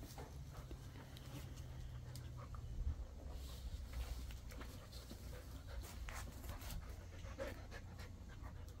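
A dog panting while tugging on a braided rope toy, with scattered small clicks and scuffs throughout.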